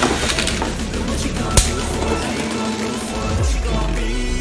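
God Valkyrie and Sieg Xcalibur Beyblade Burst tops spinning and rattling against each other in a plastic stadium. There is one sharp, loud clash about a second and a half in, all over background music.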